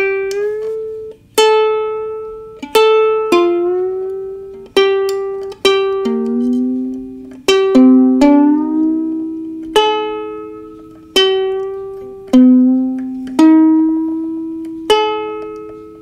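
Brüko ukulele with new fluorocarbon strings plucked one string at a time, over a dozen notes about a second apart, the pitch of several sliding up as the tuning pegs are turned while they ring: the fresh strings being roughly tuned by ear to a tuning-fork A.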